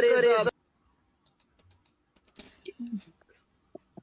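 A man's voice, cut off abruptly about half a second in, then near silence broken by a few faint clicks and a brief faint murmur.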